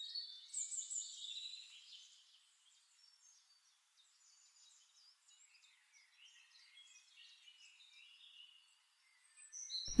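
Faint birdsong: scattered chirps and short whistles, loudest in the first couple of seconds, then very faint.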